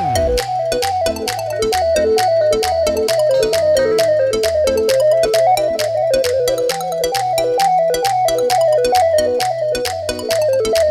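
Korg Pa4X arranger keyboard playing an instrumental interlude: a fast, ornamented melody over a stepping bass line and a quick, steady drum beat.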